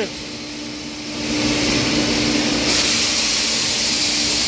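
Steady hiss of air suction over a low machine hum, growing louder about a second in and brighter near three seconds: a vacuum line drawing the air out of the rubber envelope around a retreaded truck tyre.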